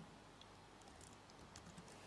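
Faint typing on a computer keyboard: a scattered run of soft key clicks.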